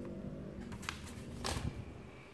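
A paper booklet and a cardboard watch box being handled: a few brief rustles and taps, the loudest about one and a half seconds in.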